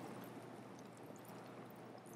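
Faint, steady hiss of tomato sauce and vegetables simmering in a sauté pan on a gas burner.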